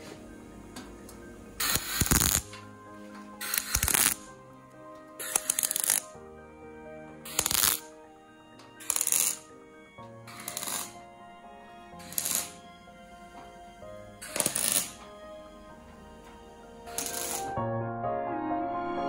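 Background music, overlaid by about nine short, loud bursts of a power tool cutting or grinding the car's sheet-metal body, each about half a second long, at irregular intervals.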